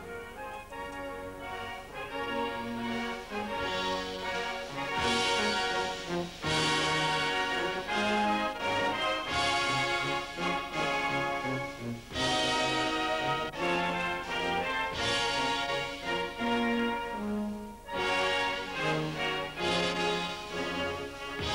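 Orchestral music with brass, slow sustained chords that swell and change every second or two, growing fuller about five seconds in.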